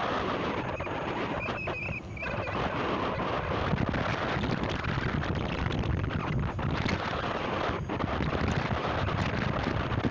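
Wind buffeting the microphone of a phone carried on a moving electric unicycle: a steady rush of noise strongest in the low end. A brief high chirp sounds about two seconds in.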